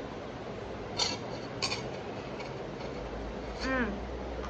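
A person chewing a bite of thick-crust pepperoni pizza: two short crisp clicks from the bite about a second apart, then a brief hummed "mm" falling in pitch near the end, over a steady background hiss.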